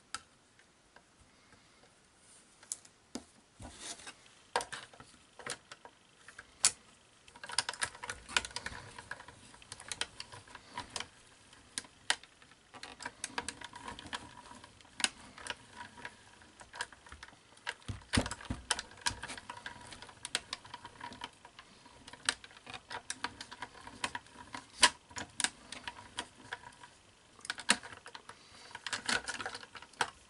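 Manual die-cutting machine being hand-cranked, rolling a die and felt between cutting plates through its rollers: irregular clicks and creaks over a grinding rumble that runs from a few seconds in until near the end.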